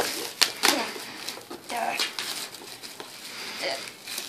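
Plastic shrink wrap crinkling and tearing as it is pulled off a cardboard board game box, in a run of short crackles.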